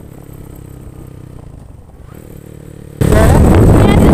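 Motorcycle engine running steadily while riding. About three seconds in, a much louder voice cuts in suddenly.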